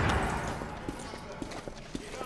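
A door opening, followed by a few irregular footsteps on a hard floor.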